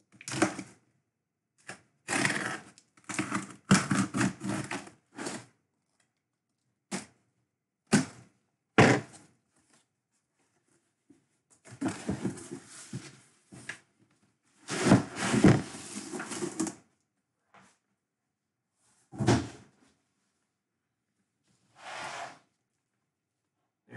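A corrugated cardboard shipping case being opened by hand and the jersey boxes inside pulled out and stacked: an irregular run of cardboard scrapes, rustles and thuds with short silent gaps between.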